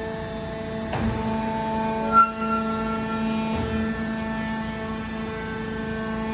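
C purlin roll forming machine running with a steady hum of several fixed tones as the formed steel C profile feeds out. There is a knock about a second in and a sharp metal clank with a brief ring about two seconds in.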